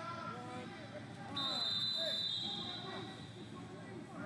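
A high, steady whistle blast starts suddenly about a second and a half in and lasts about a second and a half, dipping slightly in pitch partway. It sounds over the murmur of many voices in a large hall.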